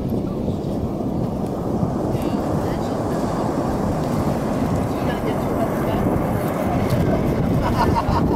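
Wind buffeting the camera's microphone, a steady low rumble.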